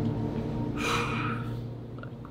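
A single short gasp, a breathy intake about a second in, over a steady low hum.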